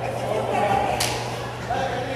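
Indistinct voices echoing in a large hall, with one sharp, slap-like crack about a second in.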